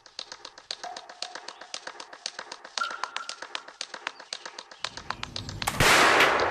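Quick, even ticking with a low rumble swelling in under it, then a single loud shot near the end from a replica .54 caliber Pennsylvania flintlock rifle.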